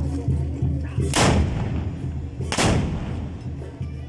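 Two loud black-powder musket blasts about a second and a half apart, each trailing off in a long echoing tail, over band music playing underneath.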